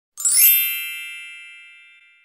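A single bright, bell-like chime that swells in within the first half second and rings away over about two seconds.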